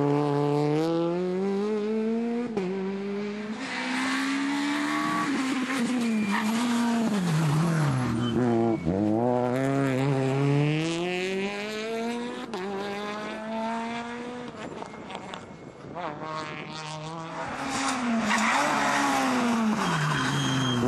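Peugeot 208 rally car engines revving hard through corners: the engine note climbs steeply under acceleration, drops at each gear change or lift for braking, then climbs again, over and over. The sound dips quieter about three-quarters of the way through.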